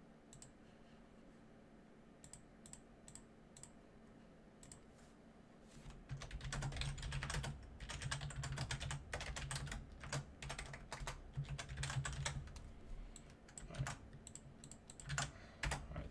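Typing on a computer keyboard: scattered keystrokes at first, then a quicker run of typing from about six seconds in with a low hum beneath it, then a few more keystrokes.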